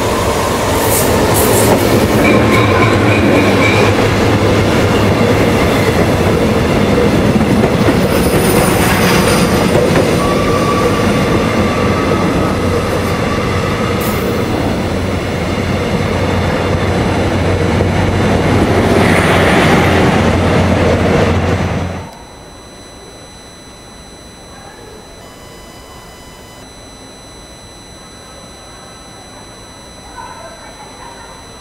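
Electric passenger trains running through a station platform: loud, steady rail and wheel noise with brief wheel squeals. About 22 seconds in, it drops suddenly to a faint, distant background with a thin high whistle.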